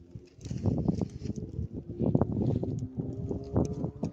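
Footsteps crunching through dry grass, brush and loose stones, with irregular knocks and rustles from the handheld camera moving through the undergrowth.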